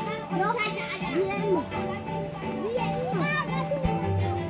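Young children's voices chattering and calling, over background music with steady held tones.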